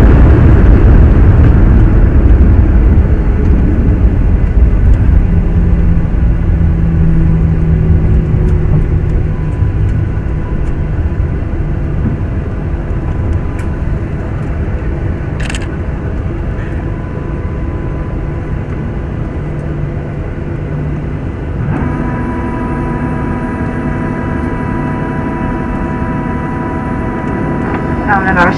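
Cabin noise of a Boeing 737-800 rolling out on the runway just after landing: the rumble and engine noise are loud at first and fall away over the first ten seconds or so as the jet slows. Near the end a steady hum with several pitches joins in.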